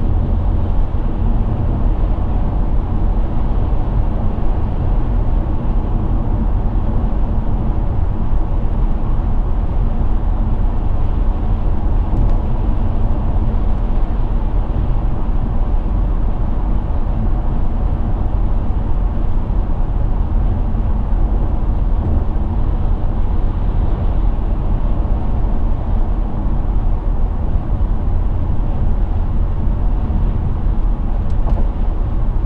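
Steady road noise inside the cabin of a 2005 BMW 730d diesel automatic saloon cruising at motorway speed: an even low rumble of tyres and engine that stays level throughout.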